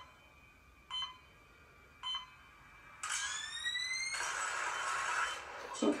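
Film trailer sound design playing back: two short soft hits about a second apart, then a rising whine for about a second, breaking into a loud, even rushing noise.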